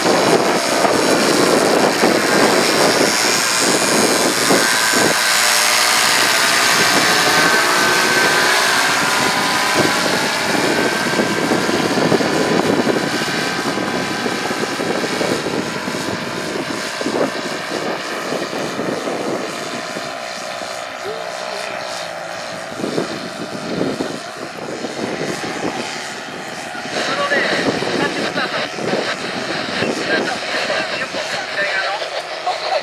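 Paramotor engine and propeller droning in flight overhead, loud in the first dozen seconds, with its pitch slowly bending, then fading as it moves away.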